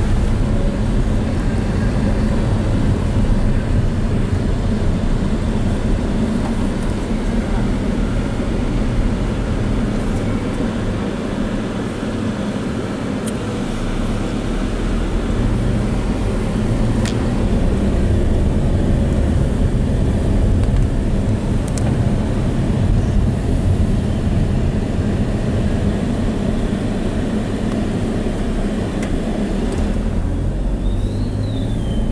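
Steady low rumble of a car's engine and tyres on the road, heard from inside the cabin while driving, with a few faint ticks.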